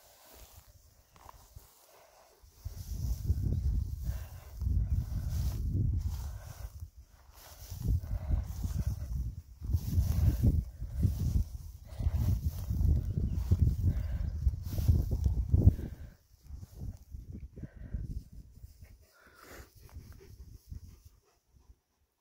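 Wind buffeting the microphone in gusts: a low rumble that comes and goes from a couple of seconds in until about sixteen seconds, then drops to faint rustling.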